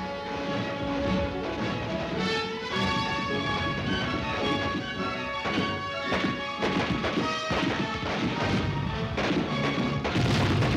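Background film music with long held notes, over scattered sharp bangs of rifle fire and blasts from an infantry assault.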